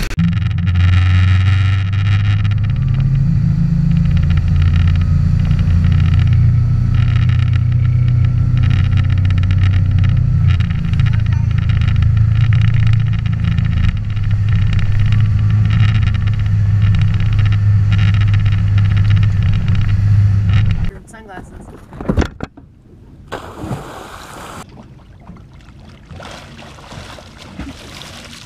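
Tow boat's engine running steadily at speed, with rushing wind and water. It gives way suddenly about 21 seconds in to much quieter water sounds and a few splashes.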